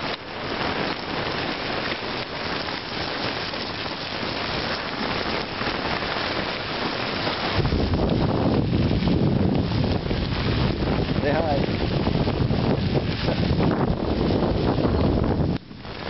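Steady crunching hiss of bicycle tyres rolling on a gravel trail, with wind buffeting the microphone from about halfway through.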